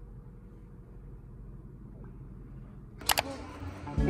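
Low steady hum of room tone, broken about three seconds in by a quick run of two or three sharp clicks.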